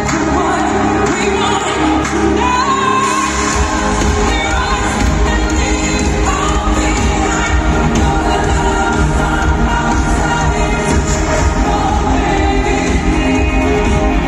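Live pop music over a stadium sound system, recorded from the audience: a woman sings over a full band. A heavy bass beat comes back in about three and a half seconds in and keeps going.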